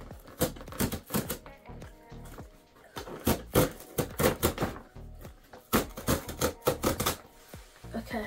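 A cardboard shipping box being torn open along its tear strip: runs of quick ripping crackles in three bursts.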